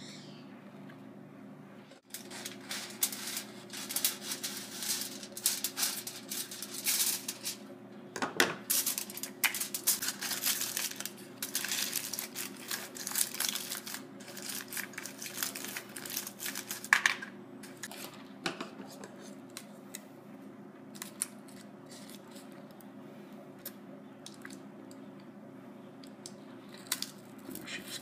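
Aluminium foil crinkling as it is folded and pressed around a small paper cup. The crackling comes in dense, irregular handfuls for most of the time, then thins to occasional crinkles and clicks in the last third.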